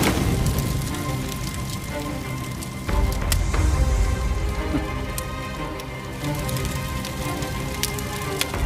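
Brushwood fire crackling, with many small sharp snaps, under dramatic score music; a deeper, louder swell in the music comes in about three seconds in.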